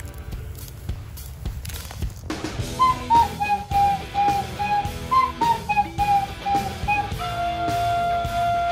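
A flute comes in about three seconds in, playing a melody of short notes, then holds one long note near the end, over backing music.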